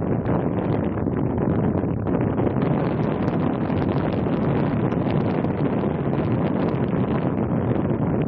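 Steady wind buffeting the microphone: a constant low rush without a break.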